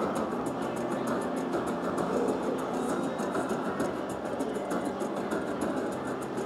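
Raging Rhino Rampage slot machine's free-games bonus music playing steadily, with the reel-spin sounds of successive free spins.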